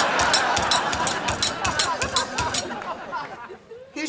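Studio audience laughing with scattered clapping, fading away about three seconds in.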